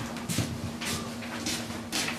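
Footsteps on a hardwood floor, about two a second, with rustle from the handheld camera being carried, over a faint steady hum.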